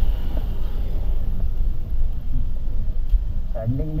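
Motorcycle ridden slowly over a dirt off-road track, its engine running at low speed under a heavy, uneven low rumble on the microphone.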